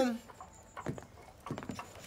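A few faint, scattered taps and knocks from the anime's sound effects, the tail of a spoken line fading out at the start.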